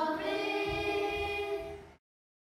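Choir singing a Christmas carol in long held notes, fading out near the end.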